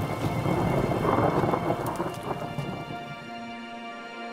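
Thunderstorm: rain falling with low rumbling thunder, fading out near the end as a steady music drone comes in.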